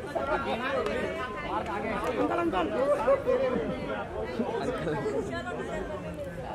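Indistinct chatter of people talking over one another.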